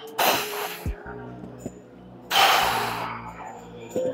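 Two forceful breaths out, each about a second long and some two seconds apart, from a woman straining through reps on a weight machine, over steady background music.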